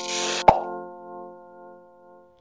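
Logo-sting jingle: a held musical chord with a hissing shimmer that cuts off, then a single sharp pop about half a second in, after which the chord fades away.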